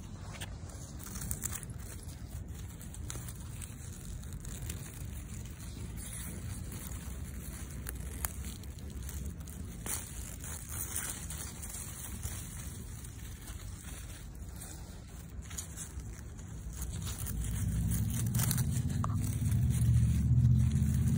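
Radish leaves and stems rustling and crackling as a hand works through the foliage and pulls a radish out of the soil; the leaves sound almost like crinkling plastic. A low rumble grows louder near the end.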